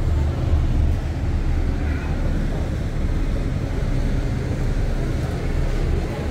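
Steady low drone of a river cruise boat's engines, with a rough, fluctuating rumble over it.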